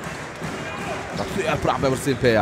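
A basketball being dribbled on a hardwood court, bouncing repeatedly, over arena crowd noise; a voice calls out near the end.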